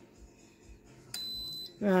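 Instant Pot electric pressure cooker beeping once, a single high beep of about half a second just over a second in, signalling that its pressure-cooking program has started.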